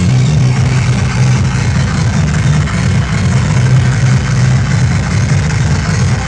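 Loud electronic dance music on a party sound system, with a heavy, pulsing bass line under a dense mix.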